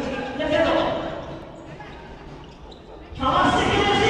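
Futsal game sound in an indoor arena: ball kicks and bounces on the hardwood court under players' and spectators' voices. About three seconds in, crowd noise rises suddenly and stays loud, as a shot at goal draws a reaction.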